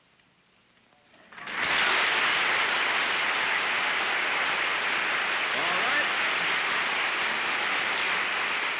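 A studio audience breaks into applause after a moment of quiet, about a second and a half in, and keeps clapping steadily.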